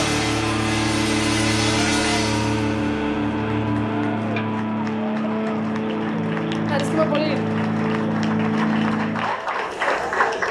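A live rock band's closing chord ringing out on electric guitars. The cymbals fade and the bass drops out after a few seconds while the guitars keep sustaining. The chord stops near the end and the crowd cheers and claps.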